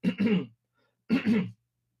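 A man clearing his throat twice, the two short bursts about a second apart.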